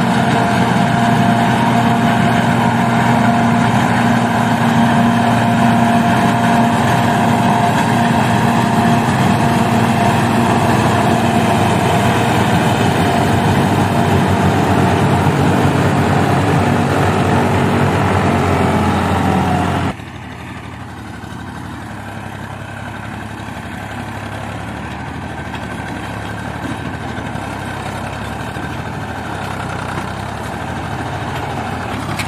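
New Holland FX28 forage harvester running as it chops maize, a loud steady machine sound with a constant whine; the whine sags slightly just before the sound cuts off abruptly about two-thirds of the way through. It is replaced by a quieter tractor diesel engine pulling a loaded trolley, growing slowly louder as it approaches.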